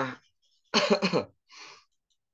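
A person clearing their throat in a short two-part burst, followed by a brief breath.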